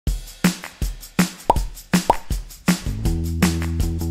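Upbeat electronic intro jingle with a steady drum beat. Two short rising pops sound in its first half, and a bass line and chords join about three seconds in.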